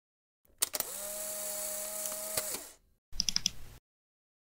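Intro sound effects: a steady whirring hiss over a low hum, with a few sharp clicks, for about two seconds. After a short gap comes a brief run of quick, bright, high-pitched pulses.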